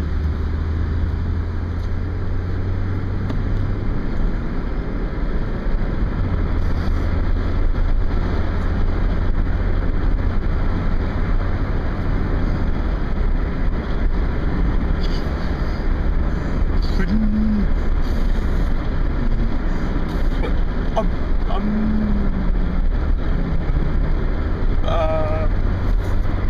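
Car interior noise while driving: a steady low engine hum under road and wind noise, heard from inside the cabin. The low hum drops out briefly about four seconds in and comes back about two seconds later.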